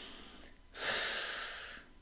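A woman taking one deep breath of about a second, an airy hiss with no voice in it, as she calms herself after laughing.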